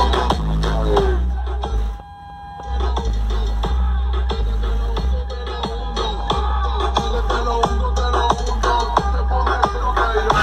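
Electronic dance music with a heavy, pulsing bass line played loud through a car audio open-show system's wall of Genius Pro Audio midrange speakers. The music drops out briefly about two seconds in, then comes back.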